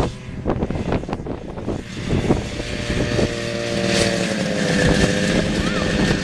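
Vintage two-stroke snowmobile engine running as the machine approaches, growing louder, its pitch sagging a little in the second half as it slows to a stop.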